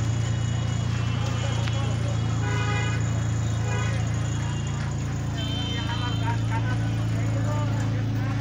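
Street noise: a steady low engine hum with people talking over it.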